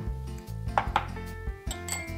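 A few light clinks of a small glass prep bowl against a white ceramic bowl as mirin is poured in, about a second in and again near the end. Soft background music plays underneath.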